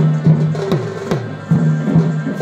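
Live folk drumming for a Chhau dance on large barrel drums (dhol): heavy strokes about twice a second, each dropping in pitch, over a steady low tone.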